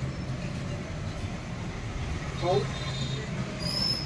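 A steady low hum, with a brief voice about two and a half seconds in and a faint high thin tone near the end.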